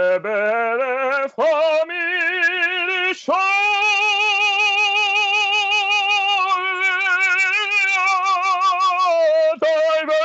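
A man singing opera unaccompanied, with no warm-up, over a video call: his voice climbs through the first few seconds to a high note held with strong vibrato for about six seconds, breaks off briefly near the end, then carries on.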